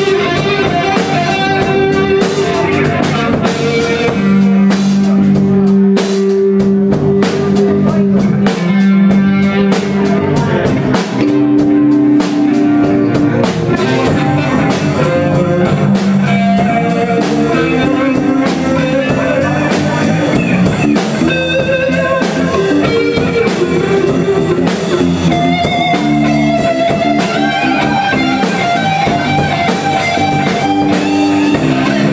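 Live electric guitar, electric bass and drum kit playing a blues-rock instrumental. The electric guitar plays lead lines over a steady bass and drum groove.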